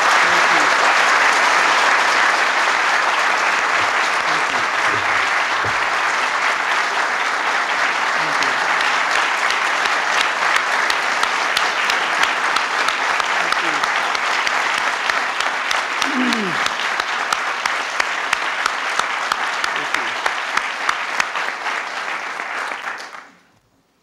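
Audience applauding. The clapping is dense at first and thins into more distinct individual claps, then cuts off suddenly near the end.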